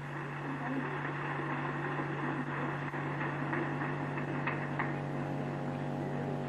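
Steady low electrical mains hum, as from a public-address or recording chain, over an even faint background hiss.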